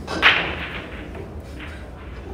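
A sharp clack of a cue tip striking a pool ball, then fainter ball clicks over about half a second, with another faint click a little before the end.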